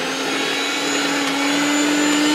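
Electric mixer grinder (blender) with a small stainless steel jar fitted, its motor running at speed: a loud steady whine over rushing noise, creeping slowly up in pitch as the motor spins up.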